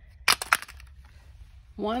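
A quick cluster of a few sharp clicks and knocks, small hard keepsakes being handled or set down among the trinkets, followed by a pause before a woman starts speaking near the end.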